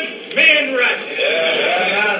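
A man's voice speaking in long phrases that glide up and down in pitch, with short breaks between them.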